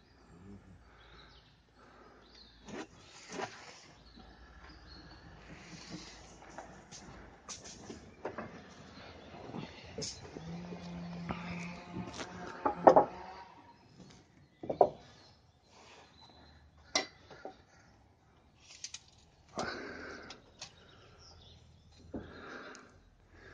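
Scattered knocks and clicks of work on a timber-framed roof under construction, irregular and some sharp, with a short steady hum about ten seconds in.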